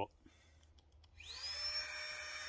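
Flextail Tiny Pump 2, a miniature battery-powered air pump, switching on about a second in as it inflates a sleeping pad. Its motor whine rises in pitch as it spins up, then settles into a steady whirr.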